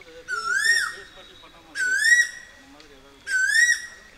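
A loud, high whistle-like call repeated three times, about one and a half seconds apart, each note swooping upward and then held briefly.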